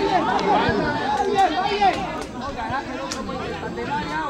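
Several people's voices talking over one another at once, indistinct chatter with no clear single speaker.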